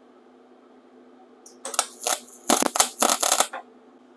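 MIG welder tacking the extension onto a motorcycle kickstand: five or so short spurts of arc crackle with brief gaps between them, starting about one and a half seconds in and stopping about half a second before the end.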